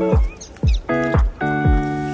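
Background music with a steady beat: a kick drum about twice a second under sustained synth chords.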